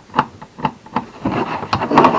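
A small metal scraper scraping green corrosion off the metal rivets of a cotton web belt: short scratchy strokes about two a second, turning into a quick, dense run near the end.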